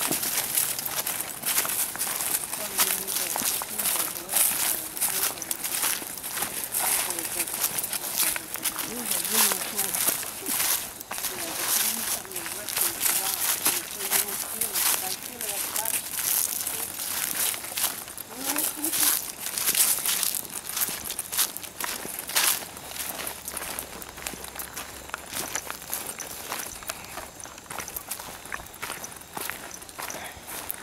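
Footsteps of several hikers on a dirt trail strewn with dry leaves: steady, irregular crunching and scuffing throughout.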